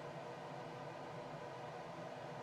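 Quiet room tone with a steady hiss and no distinct sound.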